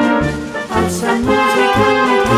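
Egerländer-style wind band playing a polka without singing: brass melody and sustained chords over a regular beat of low bass notes.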